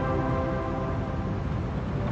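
Horror film score holding a steady chord of many tones over a low rumble.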